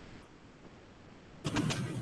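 Low background hiss, then about one and a half seconds in a short half-second burst that looks like a snatch of a person's voice.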